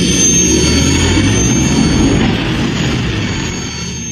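Sci-fi spaceship flyby sound effect: a loud, deep engine rush with a thin high whine over it, easing off toward the end.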